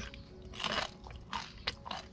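Mouth crunching and chewing a bite of crisp, well-toasted cream cheese toast: about four short crunches through the middle and latter part.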